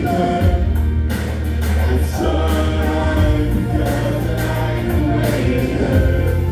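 Karaoke backing track of a pop-rap ballad playing loud, with a steady heavy bass line and singing over it.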